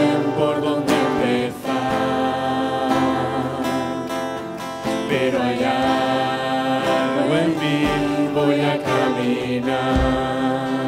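A hymn sung by several voices, women and men together, over two strummed acoustic guitars.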